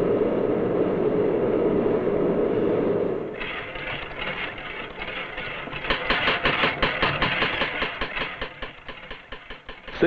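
Steady roar of a forge furnace, then from about three seconds in a power hammer striking red-hot steel in a rapid, even rhythm. The blows grow louder about six seconds in and come about five a second.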